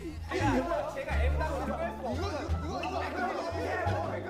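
Several voices chattering over background music with a steady low bass line.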